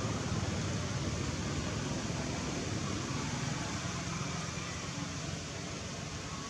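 Steady, even background rush of outdoor noise, strongest in the low range, with no distinct calls or knocks standing out.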